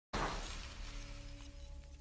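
Sound-effect sting for an animated channel logo: a sudden noisy burst about a tenth of a second in, fading away over the next two seconds above a low steady drone.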